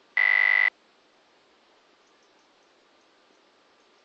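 A single loud electronic beep, about half a second long, steady in pitch and cutting off sharply, over faint outdoor background hiss.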